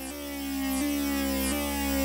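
Electronic synthesizer holding sustained notes that step to a new pitch about every 0.7 seconds, swelling gradually louder, with a faint falling swish at each step.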